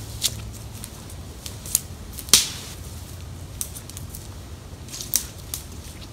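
Footsteps on a forest floor of dry pine needles and twigs: irregular sharp crunches and snaps, the loudest a little over two seconds in, with fewer near the end.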